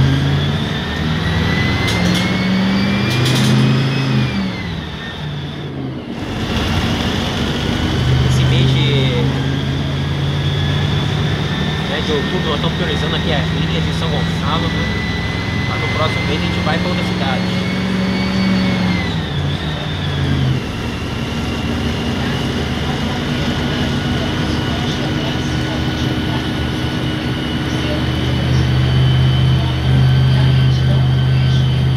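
Mercedes-Benz OF-1519 city bus's front-mounted diesel engine heard from inside the cabin while driving. The engine pitch climbs and then drops at gear changes about four seconds in and again about twenty seconds in, with a high whine rising and falling along with it.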